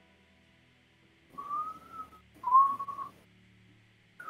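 A person whistling two short notes, each under a second long: the first rises slightly, the second is held steady and louder.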